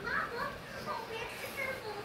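High-pitched children's voices talking indistinctly.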